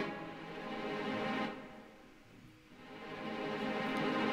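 A string pad from a hip-hop beat playing held chords. It fades out to near silence about halfway through, then swells back in near the end.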